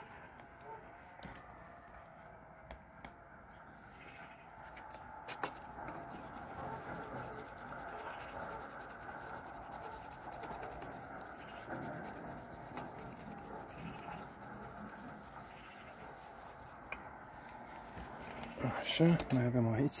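Steady hand scrubbing on a metal hive number plate to rub off stubborn marker ink. It grows louder a few seconds in and keeps on until a short bit of voice near the end.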